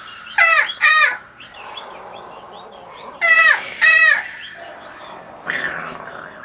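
A voice giving four short calls in two pairs, each call falling in pitch.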